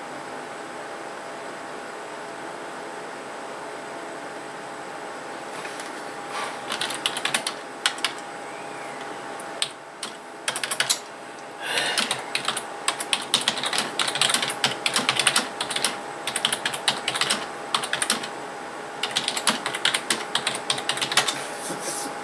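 Typing on a computer keyboard: a few seconds of only a steady hum, then scattered runs of key clicks from about six seconds in, becoming fast and continuous from about twelve seconds with a brief pause near the end.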